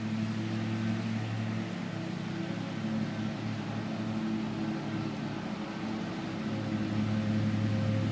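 Steady low machine hum with an even hiss over it, holding at one pitch without a break.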